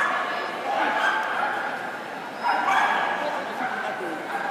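Dogs barking and yipping over continuous arena noise, growing louder for a moment about two and a half seconds in.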